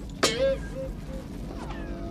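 Comic 'boing' sound effect: a quick downward-sliding pitch just after the start, then three short, fading repeats at the same pitch. It marks a ring magnet springing up to float above another magnet as like poles repel.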